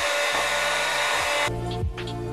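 Electric hand mixer running steadily, its beaters whipping a coffee mixture in a glass bowl, with a faint motor whine in the noise. It stops abruptly about a second and a half in.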